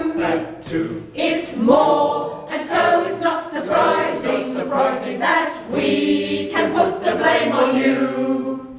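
A choir of men's and women's voices singing a cappella, in sung phrases with brief breaths between them.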